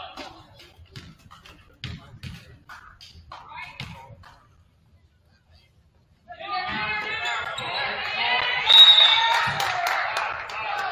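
Basketball bouncing on a hardwood gym floor in scattered knocks with faint voices, a short hush, then from about six seconds in a crowd shouting loudly as the free throw goes up. A brief high whistle sounds near nine seconds, the loudest moment.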